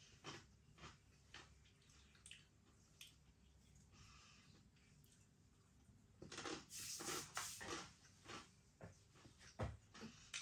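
Mostly near silence; about six seconds in, a couple of seconds of faint eating noises as a pinch of hot Bombay mix goes into the mouth and is crunched.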